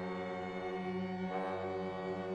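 A 17-instrument contemporary chamber ensemble of winds, brass and strings holding a dense, sustained low chord like a drone. Higher tones swell in partway through while the low notes hold steady.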